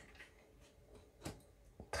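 Faint handling of an oracle card laid down and pressed flat on a wooden table, with a few soft taps, the clearest about a second and a quarter in.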